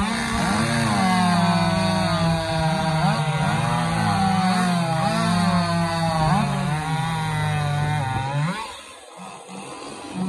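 Two gasoline chainsaws at full throttle, cutting through logs side by side. Their pitch repeatedly dips and recovers as the chains bite and clear the wood. About eight and a half seconds in, the sawing stops and the sound drops off sharply.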